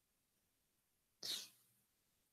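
Near silence, broken a little over a second in by one short, faint intake of breath at the microphone.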